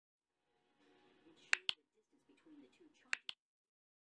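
Two quick double clicks, the pairs about a second and a half apart, over a faint low murmur.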